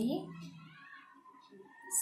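A woman's voice saying one drawn-out word with a rising pitch, followed by fainter wavering tones.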